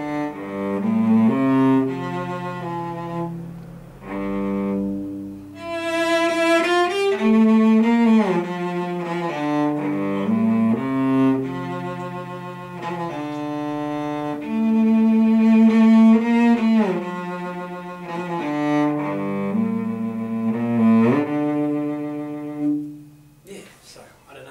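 Solo cello bowed in a slow melody of long held notes, with slides in pitch between some of them; the playing stops near the end.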